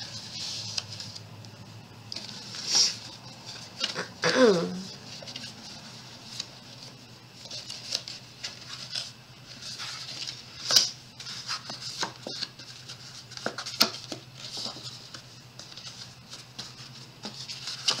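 Hands folding and creasing scored yellow cardstock into a box: irregular paper rustling and crackling with a few sharper clicks as the folds are pressed.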